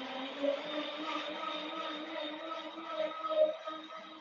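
Electric blender motor running steadily at high speed, a whirring hum that holds one pitch, as it crushes ice for a frozen drink.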